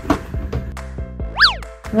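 Background music with a cartoon boing sound effect about a second and a half in: a quick pitch sweep up and then straight back down, the loudest sound here.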